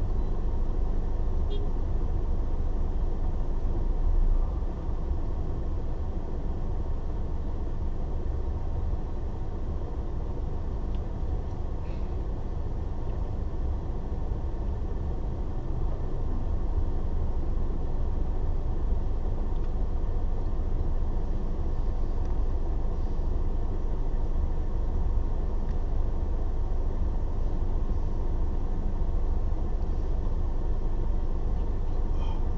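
Steady low rumble of a car idling, heard from inside its cabin while it stands in stopped traffic, with a brief louder bump about four seconds in.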